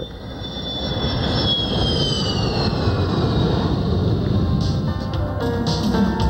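F-15 Eagle jet passing low over the runway: the engine rush builds in the first second while a high whine falls in pitch as it goes by. Music comes in over it about five seconds in.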